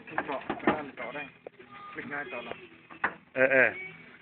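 People talking in short bursts, with a louder stretch of voice near the end.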